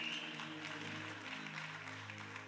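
Soft background music of low, steady held notes playing under a pause in speech, with a faint room haze.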